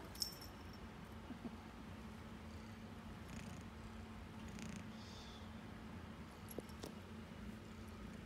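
Kitten purring faintly and steadily while kneading and burrowing into a knit blanket, with a few short light clicks, the sharpest just after the start.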